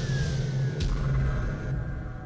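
Logo-intro sound design: a low steady drone under a high whistle-like tone that glides down and levels off, with two short whooshing hits in the first second. It fades out near the end.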